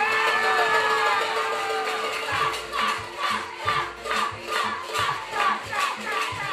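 Crowd of spectators and teammates, many of them young voices, shouting and cheering loudly during a play in a youth flag football game. About two seconds in the noise settles into a rhythmic cheer of about two beats a second.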